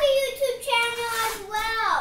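A young child's voice, high-pitched and drawn out, with one held stretch about half a second in.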